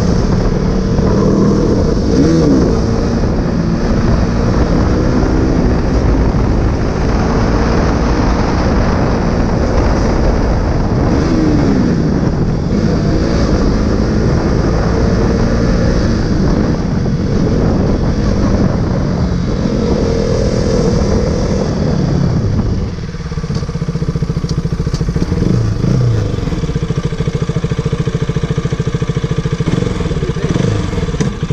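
KTM RC sport bike's single-cylinder engine running under way, its pitch rising and falling with throttle changes, over rushing wind. About 23 seconds in it drops to a lower, quieter, steadier note as the bike slows.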